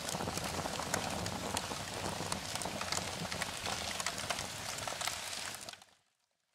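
Steady crackling noise full of small irregular clicks, cutting off suddenly near the end.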